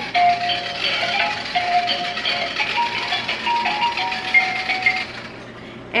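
Battery-powered wiggle ball toy playing a simple electronic tune of single held notes over a buzzing rattle from its shaking, stopping about five seconds in.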